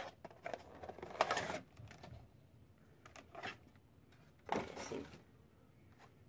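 Cardboard Funko Pop box and its plastic tray rustling and scraping in about four short bursts as the vinyl figure is unboxed.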